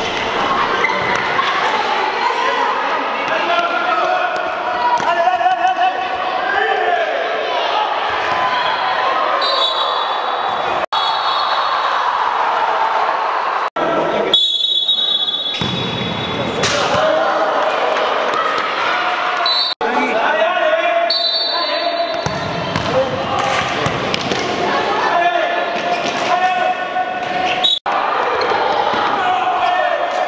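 Sound of an indoor futsal match in an echoing gym: many voices shouting from players and spectators, with the ball thudding off feet and the hard court. Several brief, steady shrill tones come through, and the sound jumps a few times where the footage is cut.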